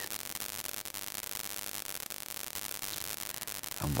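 Steady static hiss of the recording's background noise during a pause in a man's speech, with a word beginning right at the end.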